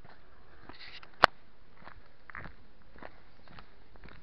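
Footsteps on a gravel footpath at a steady walking pace, about two steps a second. One loud, sharp click a little over a second in.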